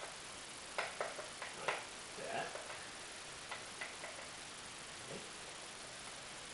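Light clicks and taps of plastic parts as a Visible V8 model engine is handled and fitted to its test stand: a few sharp clicks in the first two seconds, then a couple of fainter ones a little later.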